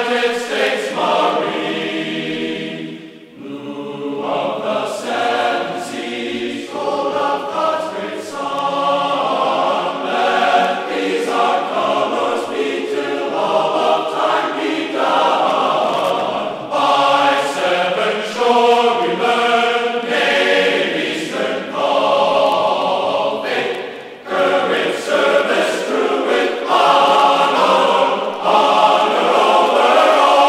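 A choir singing a classical choral piece in sustained chords, phrase by phrase, with two brief breaks between phrases.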